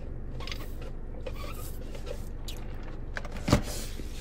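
Sipping through a straw from a large fast-food soda cup, with faint small ticks over a steady low hum, then one sharp knock about three and a half seconds in as the cup is set down.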